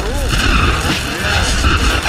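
Loud, dense, heavily distorted mix of layered cartoon audio, with a warbling tone near the start over a heavy low rumble.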